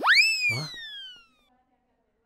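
A comic sound effect added to the soundtrack: a bright pitched tone that swoops up sharply and then glides slowly downward, fading out after about a second and a half.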